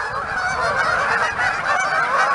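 A large flock of geese on the water squawking, with many calls overlapping into a steady chorus.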